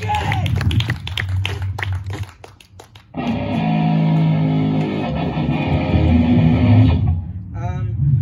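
Amplified electric guitar between songs: after a run of sharp clicks and scratches and a short pause, a chord rings out about three seconds in and is held for about four seconds, then cut off.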